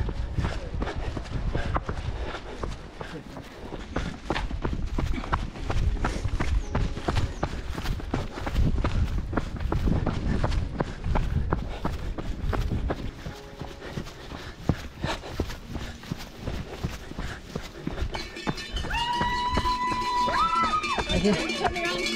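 Running footsteps on a dirt trail at a steady running pace, with a low rumble underneath. Near the end a held high tone sounds for a couple of seconds and steps up in pitch once.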